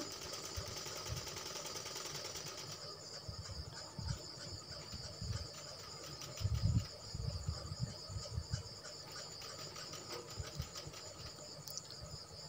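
Faint steady chirring of insects in the background, with soft fabric handling at the sewing machine and a few low thuds, most of them between about four and eight seconds in.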